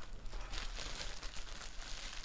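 Plastic bubble wrap crinkling and rustling as it is handled and pulled at, in an irregular run of small crackles.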